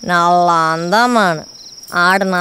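A person's voice holding one long drawn-out sound for about a second and a half, bending up and then down in pitch before it stops, over steady cricket chirping.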